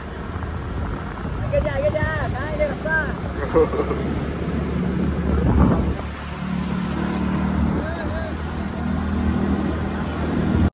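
Motorbike engine running steadily on the move, with wind noise on the microphone. Brief, indistinct voices can be heard over it early on.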